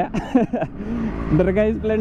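A person's voice over a Yamaha RX100's two-stroke single-cylinder engine running steadily.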